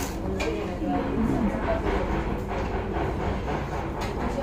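Restaurant dining-room ambience: a steady low hum with indistinct voices in the background, the loudest of them in the first second or so.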